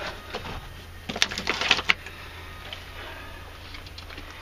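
Handling noise in a machine cab: a quick run of light clicks and knocks between one and two seconds in, over a low steady hum.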